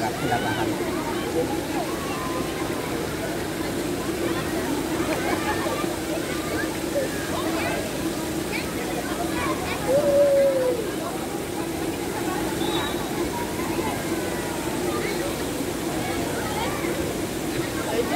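Steady rush of water from water-park fountains and pool, under the chatter and calls of many people and children around the pool; one louder call stands out about ten seconds in.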